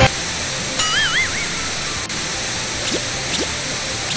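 Television static: a steady hiss that cuts in suddenly, with a brief warbling tone about a second in and a few faint short rising chirps later.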